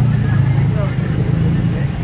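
Motor scooter engines running close by, a steady low engine drone that eases off near the end, with faint voices behind it.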